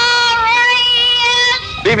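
Voices singing long held notes in harmony, a new higher note joining about half a second in. The singing stops near the end, as a man starts speaking.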